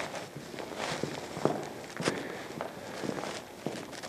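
Dance shoes stepping and scuffing on a wooden studio floor: a run of irregular light taps and shuffles.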